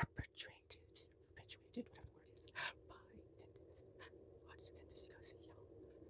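Close-miked mouth sounds: a quick irregular string of wet tongue and lip clicks and smacks, mixed with a few breathy whisper-like puffs, stopping about five and a half seconds in.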